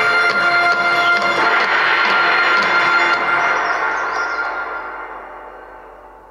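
Game music playing from a Xiaomi Mi 11T Pro's loudspeakers in a speaker test, with light percussion; the music fades out over the last three seconds.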